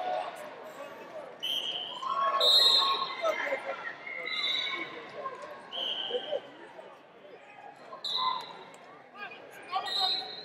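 Voices and shouts from a crowd echoing in a large arena, with several short high-pitched tones, each about half a second long.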